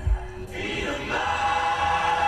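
Live rock-concert music: after a low thud at the start, a held, choir-like chord swells in about half a second in and sustains.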